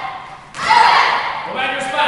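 Children's kihap shouts: two sharp, high-pitched yells about a second apart, given with their kicks and strikes during a taekwondo form.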